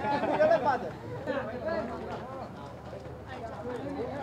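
People talking over one another: one loud voice in the first second, then quieter chatter in the background.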